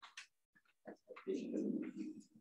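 A faint, indistinct voice murmuring briefly in the second half, after a few soft clicks.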